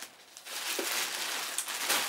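Clear plastic packaging bag crinkling and rustling as it is handled, starting about half a second in.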